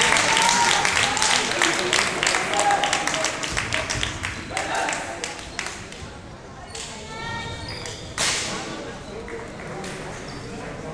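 Voices and dense, irregular hand-clapping from the teams in a large gym hall for the first five seconds. Then it quietens, with a brief pitched tone around seven seconds and a sharp knock just after eight.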